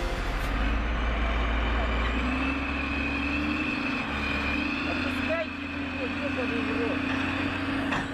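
Wheel loader's diesel engine running steadily under load, its pitch stepping up slightly about two seconds in. Faint voices can be heard under it.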